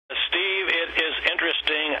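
A man speaking over a telephone line, his voice thin and narrow in tone, starting just after the beginning.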